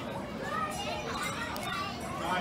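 Background voices of children and people talking, with no clear words.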